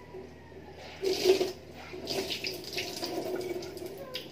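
Kitchen tap running into a sink while things are rinsed, with uneven splashing and scattered clinks, loudest about a second in.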